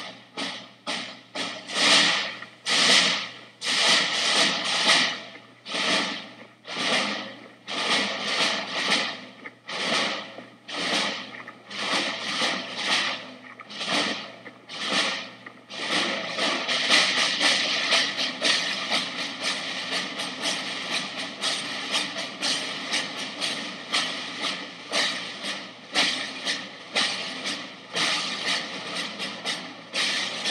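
Military rope-tensioned field drums beating a marching cadence, a loud stroke or short roll about once a second, becoming a denser, continuous rattle about halfway through.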